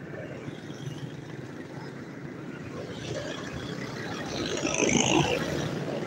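Road traffic noise on a busy city street, with a vehicle passing close and loudest about five seconds in.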